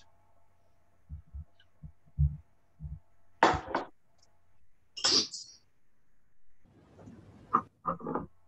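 Scattered incidental noises from open microphones on a video call: a few soft low thumps, then a short breathy burst and a higher hiss, over a faint steady hum.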